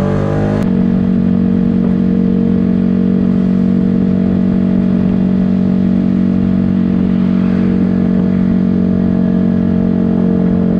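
2015 Yamaha YZF-R125's 125 cc single-cylinder four-stroke engine under way. Its pitch shifts in the first half-second, then it holds one steady note at constant speed.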